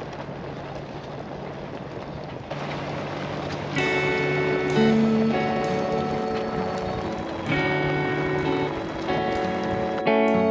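Steady road noise from an SUV driving on a gravel road. About four seconds in, background music with plucked guitar notes comes in, about one note a second, and becomes the loudest sound.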